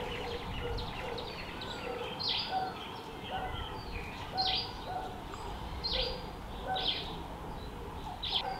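Birds calling: short, sharp chirps repeating every second or two, with some shorter, lower calls, over steady faint background noise.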